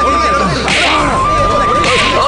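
Two sharp swishing hit sound effects, one about two-thirds of a second in and one near the end, over a crowd shouting and a high held melody line in the background music.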